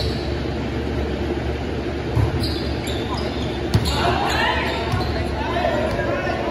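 Volleyball-hall ambience: a steady low hum under two sharp thuds of a volleyball, about two and four seconds in, followed by players' voices calling out across the hall.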